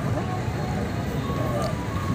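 Busy street background of traffic noise and crowd chatter, with a faint steady tone about halfway through.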